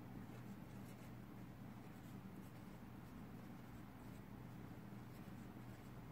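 Faint scratching of a felt-tip marker writing on paper, over a low steady hum.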